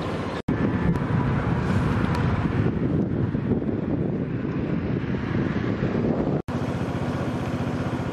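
Outdoor camera-microphone sound of a motor vehicle running, with wind on the microphone. The sound breaks off for an instant twice at cuts, and after the second one a steady engine note runs on.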